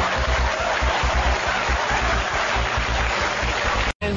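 Studio audience laughing and applauding, a dense steady clatter that cuts off suddenly just before the end.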